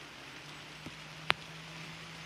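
Steady outdoor background hiss with a faint low hum, broken by one sharp click about a second and a quarter in.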